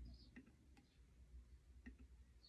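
Near silence: room tone with three faint, sharp clicks spread across the two seconds.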